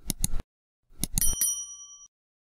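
Subscribe-button animation sound effects: two quick mouse clicks, then about a second in a few more clicks followed by a bright notification-bell ding that rings on for about half a second.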